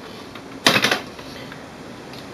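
A brief clatter of paper and plastic, just over half a second in, as a stack of paper is pushed into the printer's plastic input tray.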